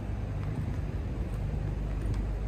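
A vehicle engine running with a steady low hum.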